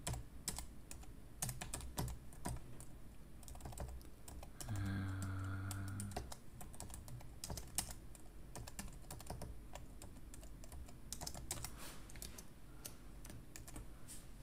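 Typing on a computer keyboard: irregular runs of key clicks with short pauses, and a brief low hum about five seconds in.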